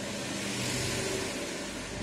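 Hot soldering iron tip sizzling in a lump of rosin flux, a steady hiss, as the tip is fluxed to desolder a surface-mount capacitor.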